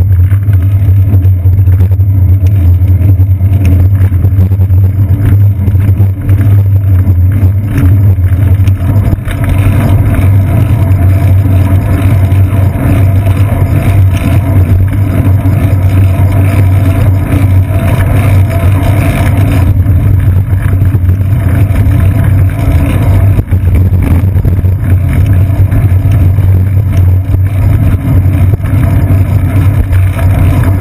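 Loud, steady low rumble of road vibration and wind picked up by a bicycle's seat-post-mounted GoPro Hero 2 as the bike rolls through city traffic, with car and taxi noise mixed in.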